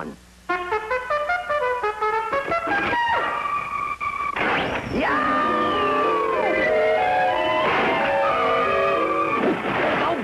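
Jazz trumpet playing fast bebop runs of quick stepped notes. About halfway through it holds a long note that drops away at its end, and the playing then continues over a fuller band sound.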